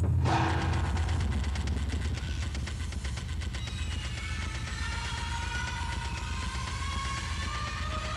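The film's end soundtrack: a low rumble with dense, rapid clattering clicks, joined from about three seconds in by several slowly rising tones.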